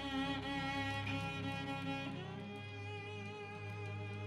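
Film score of bowed strings: a violin holding long, slightly wavering notes over a steady low note, with the notes changing about two seconds in.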